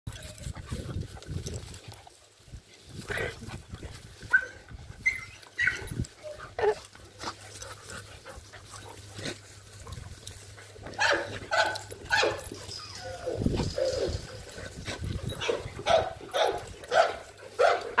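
Two dogs play-fighting, growling and giving short yips, with the calls coming thicker in the second half.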